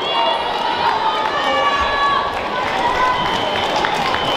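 A babble of many overlapping voices calling out in a large sports hall, with a few soft thuds of bare feet on foam mats.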